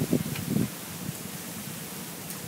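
A pause between speakers: a few faint, brief voice sounds in the first moment, then a steady, even hiss of open-air background noise.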